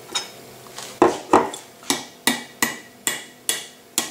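Metal teaspoon tapping the hard burnt-sugar crust of a crème brûlée. A few uneven, heavier knocks come first, then from about two seconds in an even run of sharp taps, about two and a half a second.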